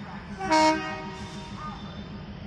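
WAP-7 electric locomotive's horn sounding one short blast about half a second in, over a steady low hum.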